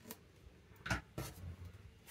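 Paper and card being handled and set down on a tabletop: a few short taps and rustles, the loudest about a second in.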